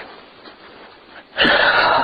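A woman's heavy, rasping breath, loud and breathy, starting about a second and a half in and lasting nearly a second.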